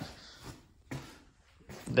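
A few soft footsteps on a garage floor, irregularly spaced.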